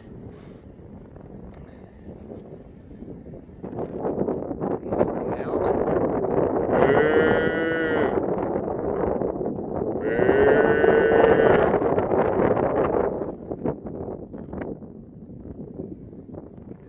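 Wind buffeting the microphone, with two long, drawn-out livestock calls a few seconds apart in the middle, each rising and falling in pitch.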